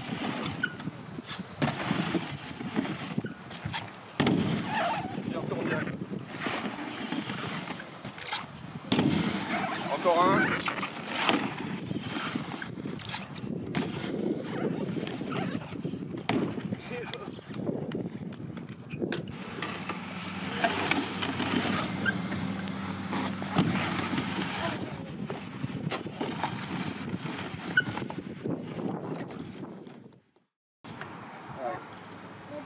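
BMX bike riding back and forth on a mini ramp: tyres rolling over the ramp surface, with repeated knocks and thuds from landings and the bike's parts rattling.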